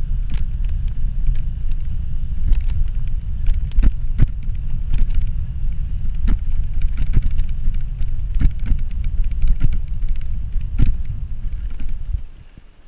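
Wind rushing over an action camera's microphone during a fast downhill bicycle ride, with irregular rattles and knocks from the bike jolting over cobblestones.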